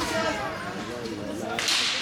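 Ice hockey faceoff: a sharp, short hiss of sticks and skate blades on the ice about one and a half seconds in, as the puck is dropped and play starts, over rink-side voices.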